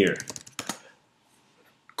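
A few computer keyboard keystrokes as a web address is finished and entered, short clicks within the first second, then near silence.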